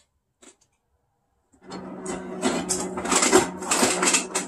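Ice cubes clattering, being added for a smoothie, starting about a second and a half in, over a steady low hum.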